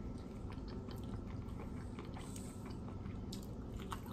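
Faint, close-up mouth sounds of a person chewing food, with small soft clicks and a few sharper clicks near the end.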